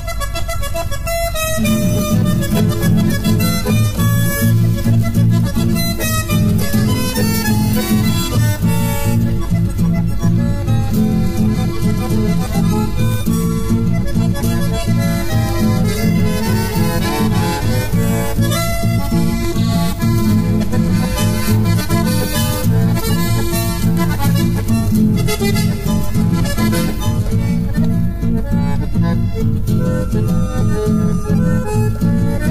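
Instrumental rasguido doble, a Corrientes folk dance tune, played on accordion and bandoneón over guitars. The piece starts right away, and the bass and guitar accompaniment fills in about a second and a half in.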